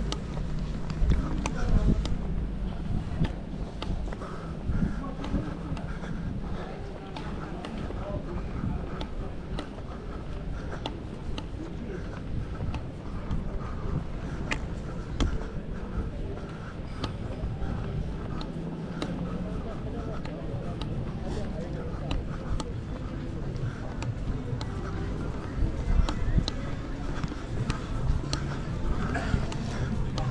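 Walking on a paved promenade: trekking-pole tips tap the pavement now and then in sharp clicks over a steady low rumble, with faint voices of people nearby.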